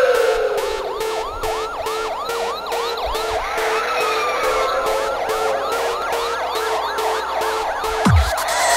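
Intro of an electronic dance track: a siren-like wailing effect of short rising sweeps, about three a second, over a steady pulsing synth beat.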